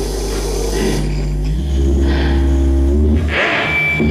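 Live improvised electronic noise music from electric guitar and live electronics: layered sustained low drones with held tones above them. A high hiss cuts off about a second in, a deeper bass drone swells in shortly after, and a brief hissing burst comes near the end.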